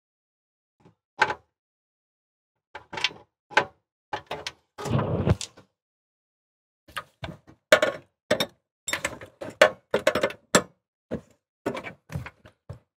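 Metal hand tools clicking and knocking against a brass flare fitting as a gas line is tightened onto a propane cooktop's valve. The sharp clicks come irregularly and grow denser in the second half, with a longer, noisier handling sound about five seconds in.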